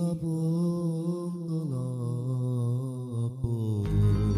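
Slow Romani hallgató song: a man's voice sings long, held notes with a wavering vibrato over a steady keyboard chord, the melody stepping down to a lower note a little before halfway.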